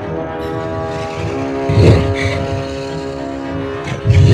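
Film soundtrack: a steady, low rumbling drone of held notes, with one loud, deep hit about halfway through.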